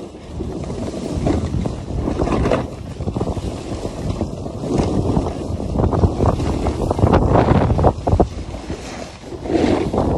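Wind buffeting the microphone while sliding fast downhill, with the rough scrape of edges on packed snow that rises and falls through the run.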